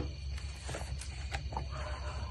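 Steady low electrical hum with a few faint clicks, in a pause between spoken phrases.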